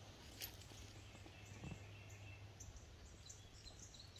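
Near silence: faint woodland ambience with a few soft, high, distant chirps and a faint low hum.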